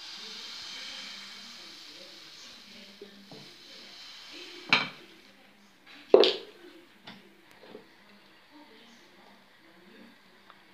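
Baghrir batter poured into a hot nonstick frying pan, with a soft hiss over the first two seconds that fades away. Then come two sharp knocks of kitchenware about a second and a half apart, the second the loudest.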